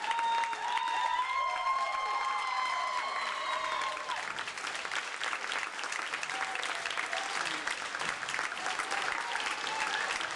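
Theatre audience applauding, with steady, dense clapping throughout. A long high cheer rises over the clapping for the first four seconds.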